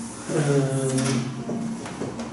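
A man's drawn-out hesitation sound, a long held "eee" at one pitch lasting about a second, followed by a single short click.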